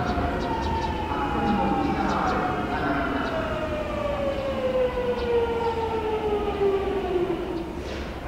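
Kobe Municipal Subway train's Hitachi GTO-VVVF inverter whining while braking on the approach: a loud, siren-like whine with several pitches that fall steadily together as the train slows.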